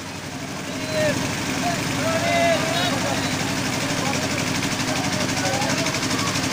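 An engine running steadily with a fast low pulsing, under the scattered chatter of a crowd of people.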